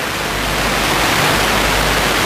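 A steady, loud rushing hiss that grows slightly louder.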